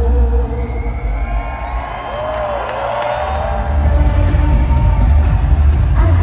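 Live pop concert music played loud through an arena sound system, with the crowd cheering over it. The bass drops away briefly and comes back heavier about halfway through.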